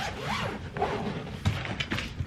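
Zipper on a fabric rolling suitcase being run along its track, with the fabric rubbing as the case is handled and a couple of light knocks about one and a half seconds in.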